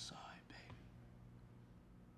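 Near silence: quiet room tone with a faint low hum, broken in the first half second by a short breathy sound from a person.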